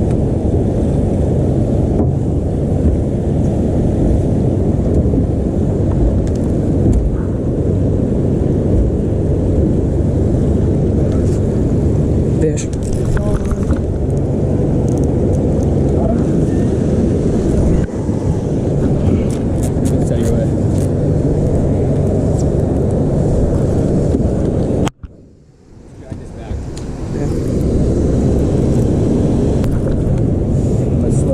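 Boat's outboard motor running steadily at low speed, holding the boat against the river current. The sound drops out suddenly about 25 seconds in and comes back over a second or two.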